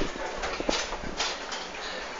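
Steady background noise of a busy outdoor market, with three short sharp clicks in the first second or so.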